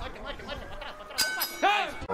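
Faint voices at ringside, then about a second in a sharp metallic clink with a brief ring, followed at once by a short, loud shout.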